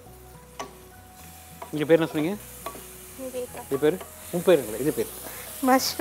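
Masala sizzling in a hot aluminium pressure-cooker pot while a wooden spatula stirs and scrapes it, a steady frying hiss from about a second in. Short spoken bits, the loudest sounds, come over it around two seconds in and again in the second half.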